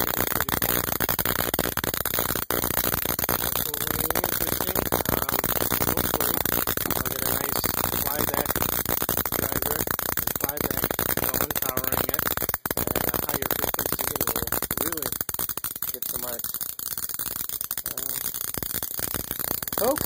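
High-voltage arc at the output wire of a Cockcroft-Walton voltage multiplier driven by a neon sign transformer, buzzing and crackling steadily, then stopping at the very end.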